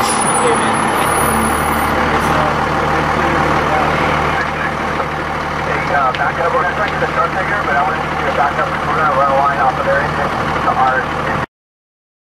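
Fire engine running steadily with a low hum, with indistinct voices talking over it from about halfway through; the sound cuts out just before the end.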